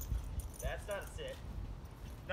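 Husky puppy giving a few short, high whining yelps about halfway through, excited as she jumps up on her handler, with the metal tags on her collar and leash jingling.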